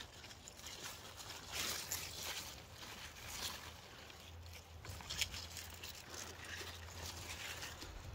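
Faint rustling of radish leaves and soil as garden radishes are pulled from a raised bed, a few soft scuffs over a low steady background hum.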